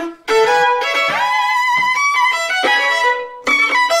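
Violins playing a bowed phrase of held notes that step up and down in pitch, breaking off briefly just after the start and again about three seconds in.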